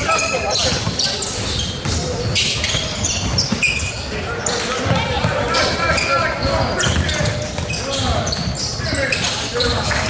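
Basketball game sounds in a large gym: a basketball bouncing on the hardwood floor amid players' footsteps, with voices calling out on and around the court.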